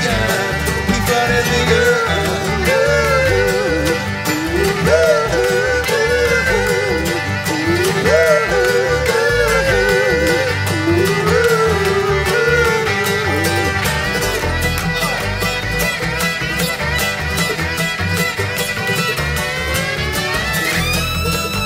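Instrumental break by an acoustic bluegrass string band: a fiddle plays a wavering lead melody over acoustic guitar, mandolin, banjo and upright bass, the lead line easing off about fourteen seconds in.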